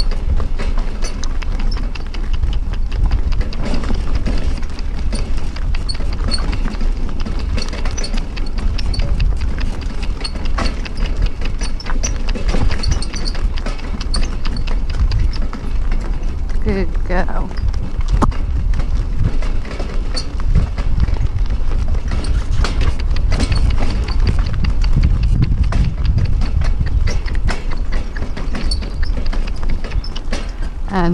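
A harness pony's hooves clip-clopping on a gravel track as it pulls a light carriage, with the carriage rattling and a heavy low rumble throughout.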